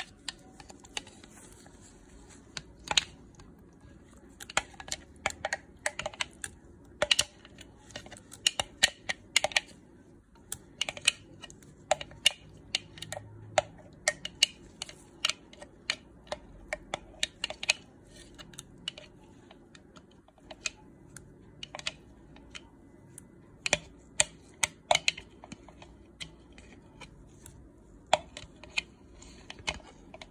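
Irregular sharp clicks and taps of a utensil scraping and knocking against a glass chopper bowl as pureed papaya is scraped out of it, some in quick runs of several taps.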